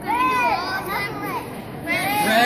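Children's voices calling out and chattering, high-pitched and excited, in a room with a hard echo.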